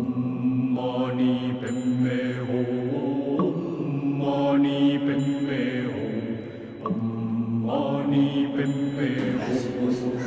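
Low-pitched Tibetan Buddhist mantra chanting, sung on steady held notes in long phrases, with a brief drop in level about two-thirds of the way through.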